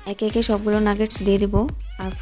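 A drawn-out, wavering vocal cry lasting about a second and a half, loud against the background.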